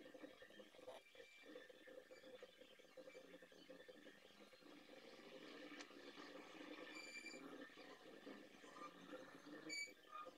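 Near silence: faint scratching of soft graphite pencils on paper. Two short high-pitched chirps come about seven seconds in and just before the end.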